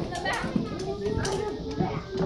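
Preschool children's voices chattering and calling out over one another, with a few sharp clicks of wooden rhythm sticks.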